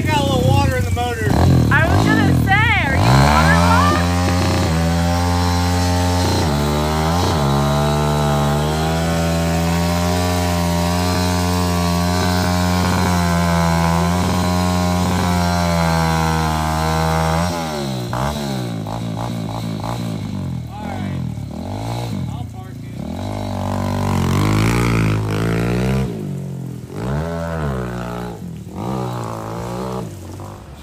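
Small dirt bike engine revving up and down for the first few seconds, then running at one steady speed for about fourteen seconds. From there on it revs up and down over and over as the bike is ridden.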